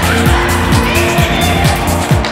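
Background music with a steady electronic beat: a deep kick drum about twice a second under sustained synth tones and fast high ticks.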